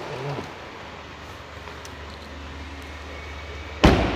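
2018 Jaguar F-Pace's 2.0-litre turbocharged four-cylinder engine idling with a steady low hum. Near the end comes one loud thump as the driver's door shuts.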